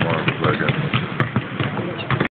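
Basketballs bouncing on a hardwood court during team practice, a few sharp separate thuds about a second apart.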